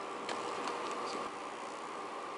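A few faint, light clicks of small plastic threading-tool pieces being handled after being prised apart, over a steady background hiss.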